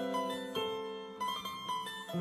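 Instrumental keyboard music: struck notes follow one another in a slow melody, each ringing on over held lower notes.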